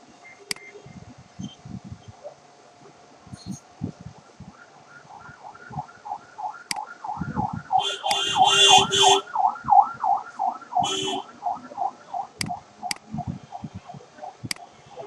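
A few sharp computer-mouse clicks as letters are picked on an on-screen keyboard, while a warbling tone that rises and falls about three times a second swells in from about five seconds in, loudest near the middle, with two short hissing bursts.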